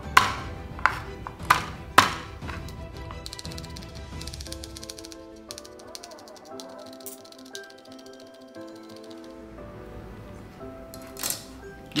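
Chef's knife hitting garlic cloves on a plastic cutting board: four sharp smacks in the first two seconds as the cloves are crushed with the blade, then a fast run of chopping as the garlic is minced. Background music plays throughout.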